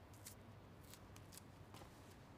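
Faint, sharp little clicks, about six in two seconds, over quiet room tone.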